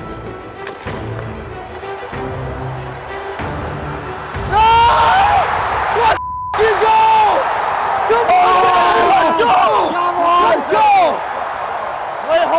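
Background music, then about four and a half seconds in loud, excited shouting and cheering from several voices as a hockey goal is celebrated, with a brief cut-out of the sound a little after the middle.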